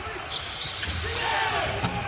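Basketball game sound on a hardwood court: short, high sneaker squeaks and the thud of a dribbled ball, with faint voices in the background.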